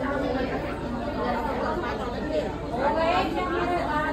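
Several people talking over one another: steady, overlapping chatter with no single clear voice.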